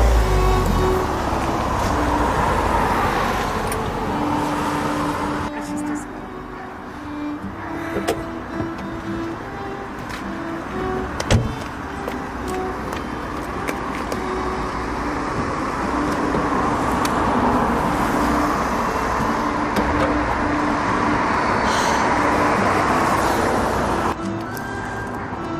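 Background music with held notes over car noise that swells, fades and swells again.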